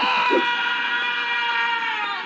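A cartoon albatross's long, held scream at a steady high pitch, sagging slightly as it tails off near the end.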